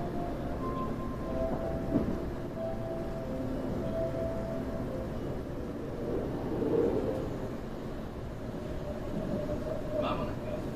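Kintetsu limited express train running slowly, heard from inside the passenger car: a steady low rumble from the running gear with faint steady tones coming and going. There is a single sharp knock about two seconds in, and the rumble swells briefly about seven seconds in.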